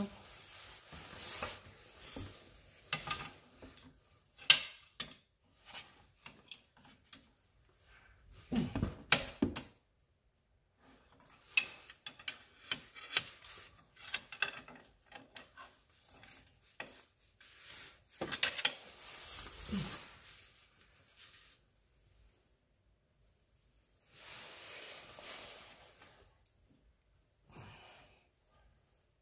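Hand work on a manual-transmission shift linkage: scattered clicks, knocks and rubbing of parts being fitted and clipped into place, with pauses between. The loudest are a sharp knock a few seconds in and a heavier knock about a third of the way through.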